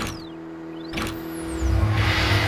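Sound effects for an animated logo intro: two sharp hits about a second apart, each with sweeping tones falling and rising around it, over a held low tone. Near the end a loud rumbling swell comes in.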